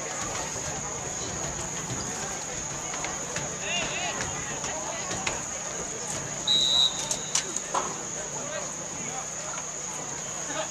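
Spectators chatting in the bleachers at a football game, with a steady high-pitched whine underneath. About six and a half seconds in, one short, loud referee's whistle blast sounds, followed by a few sharp knocks.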